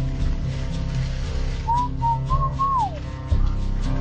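Background music, with a short whistled phrase of four notes starting a little before two seconds in, the last note sliding downward.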